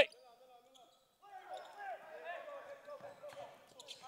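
Faint voices of basketball players calling out to each other across a large gym during live play, starting about a second in.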